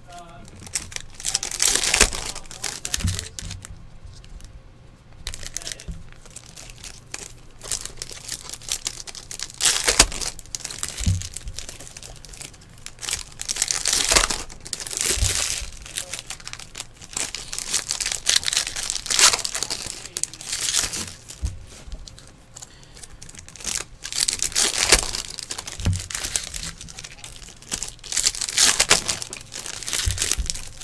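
Foil trading-card pack wrappers crinkling and tearing as they are opened by hand, in repeated bursts, with a few soft thumps as cards and packs are set down on the desk mat.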